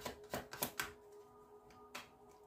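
A deck of tarot cards being shuffled by hand: a quick run of card clicks that stops about a second in. Faint steady tones follow, with one more card click near the end.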